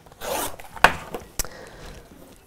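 Rotary cutter blade rolling through fabric on a cutting mat: a short rasping cut, then two sharp clicks. The blade is dull and needs sharpening.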